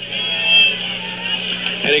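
Steady hum and background noise of a live AM radio sports broadcast taped off a radio onto cassette, with a man's voice starting near the end.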